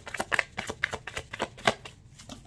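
A deck of tarot cards being shuffled by hand: a quick run of crisp card flicks, about six a second, thinning out near the end.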